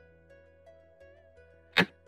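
A short, loud whoosh sound effect near the end, marking a piece move on an on-screen xiangqi board, over soft plucked-string background music.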